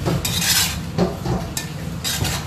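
Metal spatula scraping and clinking against a stainless-steel wok as prawns in chili sauce are stir-fried: one longer scrape, then several shorter strokes.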